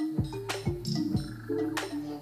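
Electronic dance music from a DJ set: deep kick-like hits that drop steeply in pitch, about two a second, over held synth notes and crisp percussion hits.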